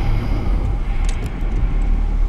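Deep, steady rumble with a hiss above it: a trailer's sound-design drone, with a few faint clicks about a second in.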